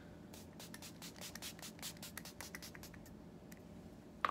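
Pump mist bottle of makeup fixing spray being spritzed onto the face: a quick run of short hissing sprays lasting about two and a half seconds, with one more spritz near the end.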